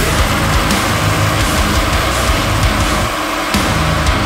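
Progressive metalcore: a dense, loud band mix of distorted guitars and drums. The bass and low drums drop out briefly a little after three seconds in, then come back.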